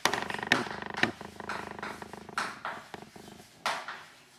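Chalk writing on a blackboard: irregular taps and scrapes as letters are written. It opens with a brief rattling rumble lasting about a second.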